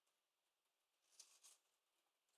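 Near silence, broken a little over a second in by two faint, brief, high-pitched rustles.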